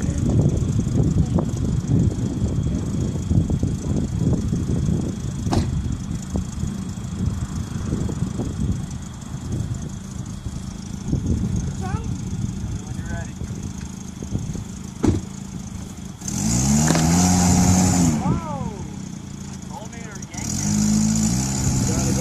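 Tracker's engine revving hard in two bursts, pitch rising and falling, with a hiss from the rear wheels spinning in sand as the two-wheel-drive SUV strains on a tow strap to pull a stuck pickup. Before the revs, a low uneven rumble with a couple of single knocks.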